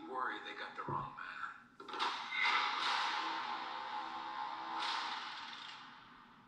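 Movie trailer soundtrack: a man's brief line of dialogue with a low thud about a second in, then a sustained swell of score that slowly fades out.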